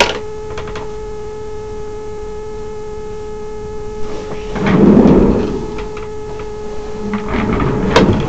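Steady electrical hum with a thin whine and its overtones, with a louder rustling swell about five seconds in as someone moves against the microphone, and a few light knocks near the end.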